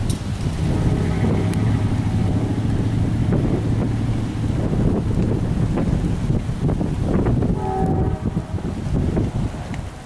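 Thunderstorm wind gusting across the microphone: a loud, steady rushing rumble. A low steady hum runs through it for a few seconds in the first half, and the noise eases off near the end.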